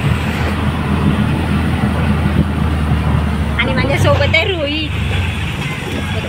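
Auto-rickshaw engine running steadily as it drives, heard from inside the open passenger cabin, with a low, even hum. A voice speaks briefly about three and a half seconds in.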